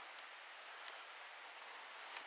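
Quiet outdoor background: a faint, even hiss with a faint tick or two.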